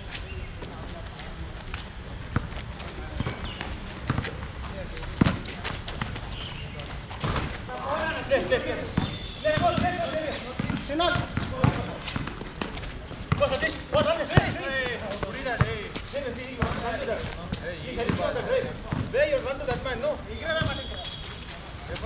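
Basketball bouncing now and then on an outdoor concrete court, with the players' unclear voices over it, busier from about seven seconds in.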